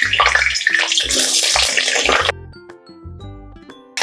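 Cauliflower florets sizzling as they are dropped into hot oil in a metal kadhai, a dense hiss that cuts off suddenly about two seconds in. Background music with steady bass notes plays under it and is left alone at the end.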